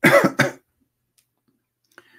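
A man clears his throat with a short double cough.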